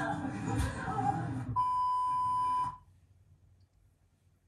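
Voices over music, then a single steady high electronic beep, held about a second and cut off sharply.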